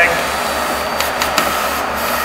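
Vacuum tube lifter's blower running with a steady rushing air noise as its suction foot seals onto a paper sack and lifts it. There are a few quick clicks about a second in.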